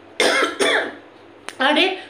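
A woman coughing twice in quick succession, the two coughs about half a second apart.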